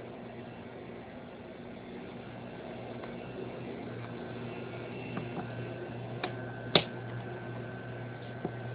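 Steady hum and whir of a small box fan running. A faint steady high tone joins about five seconds in, and two sharp clicks come near the end, the second one the loudest sound.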